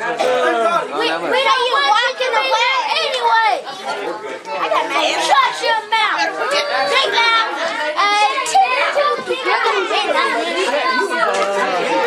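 Several people talking over one another at once: continuous overlapping chatter of a crowd, with no single voice standing out.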